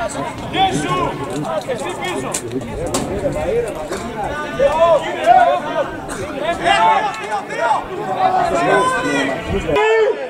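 Several men's voices talking and shouting over one another: players on the pitch and spectators on the sideline of a football match.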